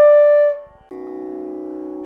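A single held flute note, the end of an intro jingle, fades out about half a second in. Just under a second in, a steady drone for Indian classical singing begins and holds without change.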